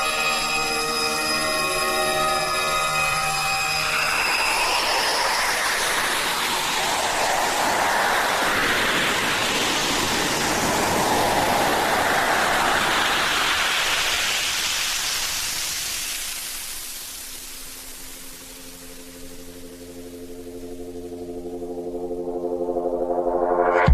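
Electronic dance music breakdown: a held synth chord gives way about four seconds in to a long rushing noise sweep whose pitch slides up and down. The sweep fades over several seconds, and a new synth chord with bass fades in near the end.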